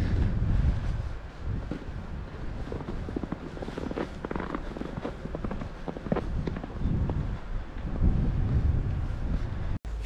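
Footsteps in fresh snow, irregular soft crunches, with wind buffeting the microphone as a steady low rumble.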